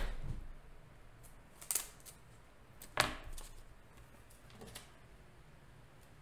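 A few scattered soft clicks and taps at a computer desk, about four in six seconds, the loudest about three seconds in, over a quiet room.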